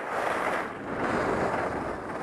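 Steady rushing noise of skiing downhill. Wind buffets the camera microphone, mixed with skis sliding over packed snow.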